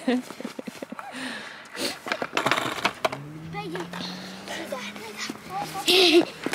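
Skateboard on a concrete skatepark: sharp clacks and knocks of the board and wheels, with a steady rolling sound through the second half.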